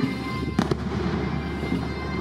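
Two sharp firework bangs in quick succession about half a second in, heard over bagpipe music with its steady drone.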